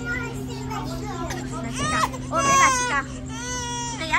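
A young child's voice making high-pitched, drawn-out wordless calls, starting about two seconds in and coming twice more before the end, over a steady low hum and background chatter.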